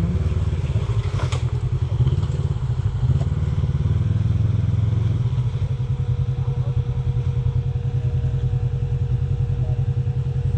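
Side-by-side UTV engine idling steadily, a low, even pulsing run with no revving. A faint, thin steady whine joins in about halfway.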